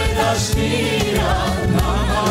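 Live Albanian folk song: a woman's voice singing together with a group of men's voices over band accompaniment.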